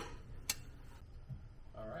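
A single sharp click about half a second in, then faint room tone.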